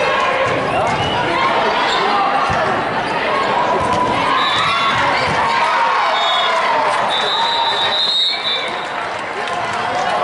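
Hall din of a multi-court volleyball tournament: many overlapping voices, balls being struck and bouncing on the courts, and a referee's whistle blowing briefly twice near the middle and then once longer about three-quarters of the way through.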